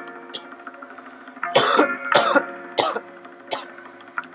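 Hip-hop beat playing, with a person coughing several times in irregular bursts starting about a second and a half in.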